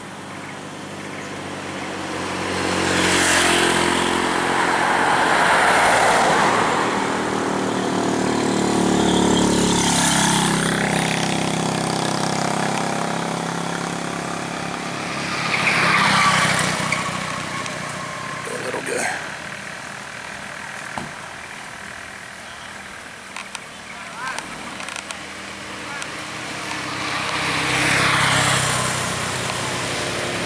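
Engine and road noise from a moving vehicle. Several other vehicles pass close by, each one rising and then fading over a few seconds.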